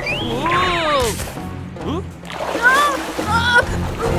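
Cartoon soundtrack: background music under comic sound effects that slide down and up in pitch, with short character cries, as a character slips on ice, and a splash of water.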